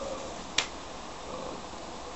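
A single sharp click about half a second in, over a steady low room hiss.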